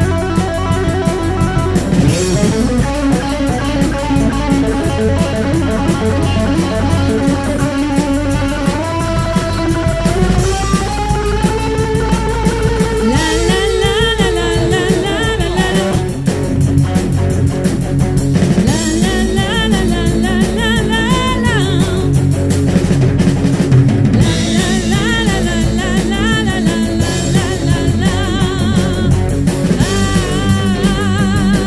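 Live rock band playing: electric guitar lines over a drum kit, with a woman singing in parts.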